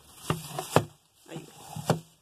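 Clear plastic wrap crinkling and rustling as hands handle plastic-wrapped plastic baskets, with a few sharp clicks, the loudest about three-quarters of a second in and just before the end.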